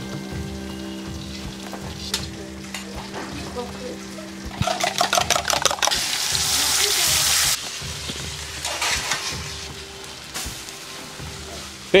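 Fish frying in oil in a pan, sizzling. Beaten egg is then poured onto a hot pan for an omelette, and the sizzle grows much louder for a few seconds just before midway. Faint background music runs underneath.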